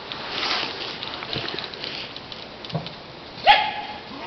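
One loud, sharp animal call near the end, held briefly on one pitch.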